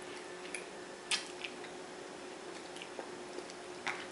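Quiet eating sounds of pizza being chewed, with short wet mouth clicks or smacks about a second in and again near the end, over a faint steady hum.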